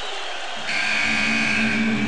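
A steady electronic buzzing tone starts suddenly about two-thirds of a second in and holds on, over the murmur of an arena crowd.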